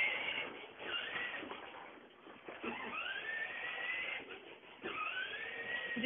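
Small electric motor of a child's battery-powered ride-on toy car whining up in pitch twice, each rise levelling off into a steady whine.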